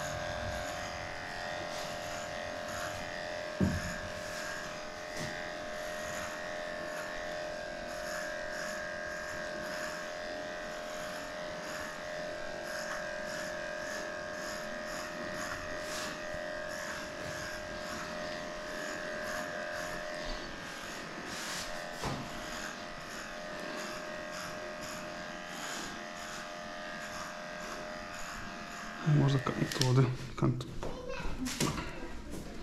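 Cordless electric dog clipper running with a steady hum while it is worked through a heavily matted coat.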